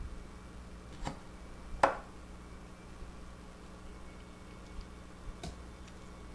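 Two light knocks, the second louder with a brief ring, then a faint click near the end, from a kitchen knife and avocado being handled on a wooden cutting board. Otherwise quiet, with a faint steady hum in the room.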